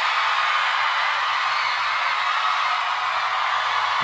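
A large concert crowd screaming together at the singer's call to scream as loud as they can: one steady, unbroken roar of many voices.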